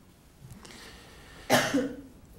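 A person coughs once, a sudden short cough about three-quarters of the way in, after a second or so of faint breathy noise.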